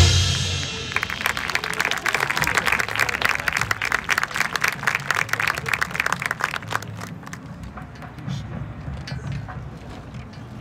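A marching band's loud held chord dies away in the first second. Then an audience applauds for about six seconds, and the applause fades.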